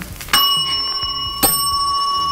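Chrome desk service bell struck twice about a second apart, each ding ringing on with a clear, steady high tone.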